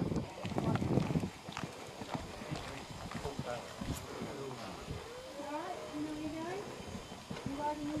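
A horse's hoofbeats on the arena surface as it canters a show-jumping course and takes a fence, a run of short thuds under nearby voices. It opens with a low rumble close to the microphone.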